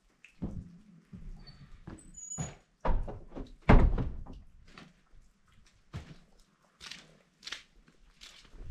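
Irregular knocks and thuds in a small room, the two loudest a little under a second apart about three seconds in, with fainter knocks before and after.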